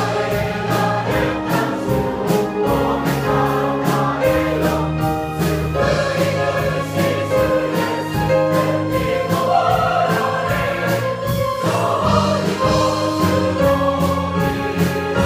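A large church choir of mostly women's voices singing a hymn together.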